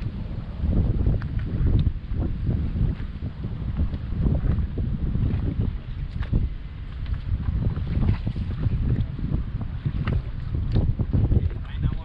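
Wind buffeting the microphone of a camera mounted on a fishing boat: a gusty rumble that rises and falls throughout, with small knocks now and then.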